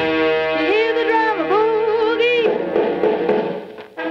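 Big band swing from a 1945 V-Disc record: the orchestra holds a chord while several notes swoop and bend in pitch. It fades out near the end, and the band comes back in right after.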